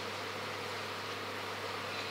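Steady room tone: a constant low electrical hum under a faint even hiss, with no distinct events.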